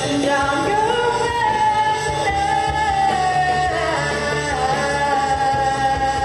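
A live rock band with a girl singing long held notes that slide between pitches, over electric guitars and a steady low backing.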